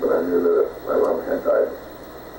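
A man speaking on an old, muffled tape recording, stopping about a second and a half in.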